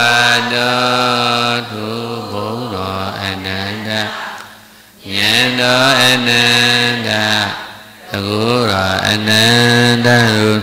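A man's voice in Buddhist chanting, holding long, steady notes in three drawn-out phrases, with a breath pause about four seconds in and another about eight seconds in; the pitch wavers and slides near the end of each phrase.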